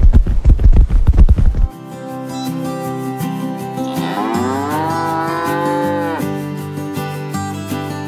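A cow's moo, one long call that rises in pitch, about four seconds in, over background music. Before it, a loud low rumble with rapid thumps cuts off about two seconds in.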